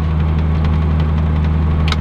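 1991 Jeep Comanche pickup cruising, heard from inside the cab: a steady low engine drone mixed with road noise.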